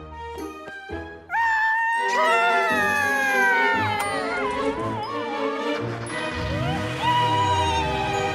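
Cartoon background music with a high, wordless character vocal that slides down in pitch from about a second in, then a held note near the end.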